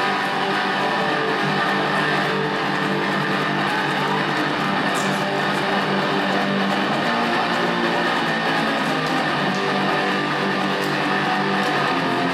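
A guitar playing live music, steady and continuous.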